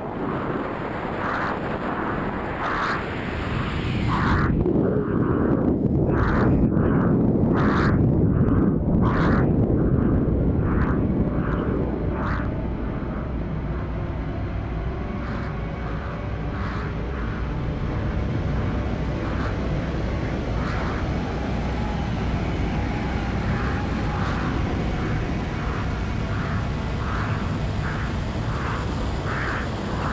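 Rushing, rumbling air noise on a freefalling skydiver's onboard camera. It grows louder from about four seconds in and eases after about twelve, with a regular pulsing about every 0.7 seconds.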